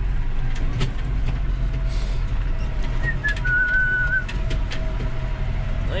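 Tractor engine running steadily while driving, heard from inside the cab, with scattered light clicks and rattles. A short, thin high whistle comes about three seconds in.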